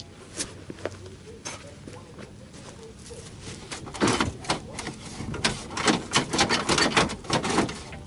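Scattered clicks and knocks of a pickup truck's front bumper and its plastic fittings being handled, thickening into a quick run of knocks and rattles from about halfway in until near the end.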